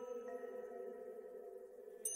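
Soft, quiet intro music of sustained held tones, like a pad or singing-bowl drone. A new higher note enters a fraction of a second in, and the upper part fades slightly toward the end.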